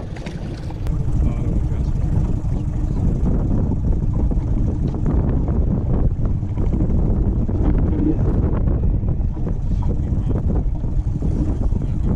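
Jon boat under way while trolling: a steady low rumble of the outboard motor mixed with wind buffeting the microphone.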